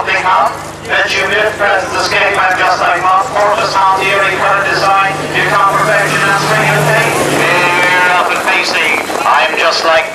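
Race commentary: continuous, indistinct speech calling the start of a harness race. A low steady hum runs underneath and stops about two seconds before the end.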